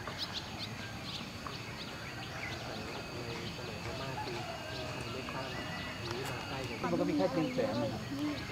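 Outdoor ambience with short, high bird chirps scattered through it and faint people's voices, one voice becoming louder near the end.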